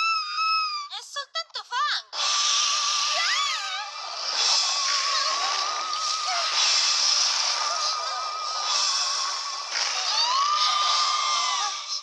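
Cartoon characters crying out in fright, then a loud hissing, rushing spooky score with a high wavering wail running through it and a few short cries over it.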